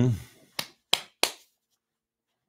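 Three sharp clicks about a third of a second apart, made while working a desk computer, after a drawn-out spoken 'um' trails off.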